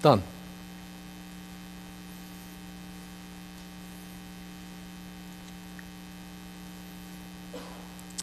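Steady electrical mains hum: a low drone with fainter higher steady tones above it.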